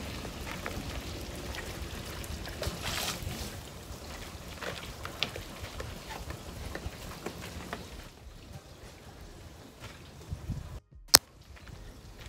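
Water sloshing and trickling in a plastic basin as it is carried, over a low steady outdoor hiss. Near the end there is a moment of silence, then a single sharp click.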